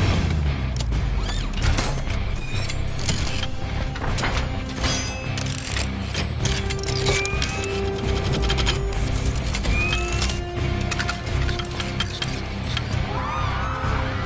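Film sound effects of a suitcase armour unfolding and locking around a body: a rapid run of metallic clicks and clanks with short rising servo whines, mixed with a dramatic music score.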